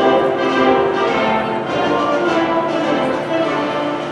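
Instrumental national anthem playing, a melody of held notes moving from one to the next at a steady pace.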